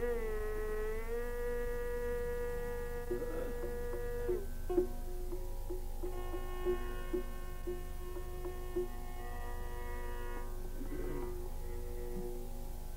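Live Carnatic classical music: long held melodic notes that bend slowly in pitch, with a lower note lightly accented at regular intervals in the middle. A steady low mains hum runs underneath.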